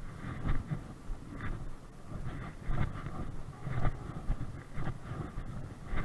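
Wind and movement rumble on a body-worn camera microphone, with irregular low thumps roughly once a second.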